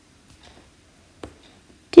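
Quiet room tone with a few faint ticks and one sharp click a little over a second in, then a woman's voice starts speaking at the very end.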